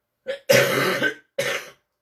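A person coughing three times in quick succession: a short cough, a long rough one, then a shorter third.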